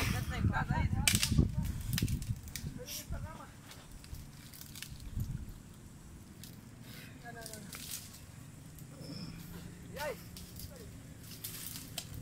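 Wind buffeting the microphone for about the first two seconds, then quieter open-air ambience with faint distant voices and a few sharp clicks.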